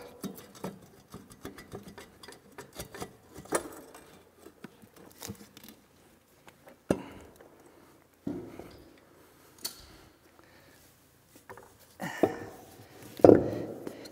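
Wrenches and metal parts clinking and knocking as the last bolts come out and the turbocharger is lifted off the exhaust manifold. A heavier knock near the end as the turbo is set down on the concrete floor.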